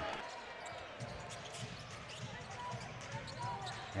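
Faint game sound from a basketball court: a basketball bouncing on the hardwood floor in irregular dribbles, with faint arena background noise.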